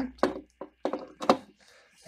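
A few sharp plastic-and-metal clicks and knocks as a power plug is pushed into the front outlet of a variac (variable autotransformer) and the unit is handled.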